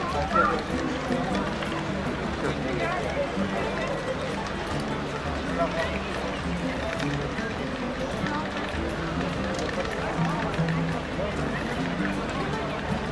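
Many people talking at once in a busy outdoor crowd, with music in the background.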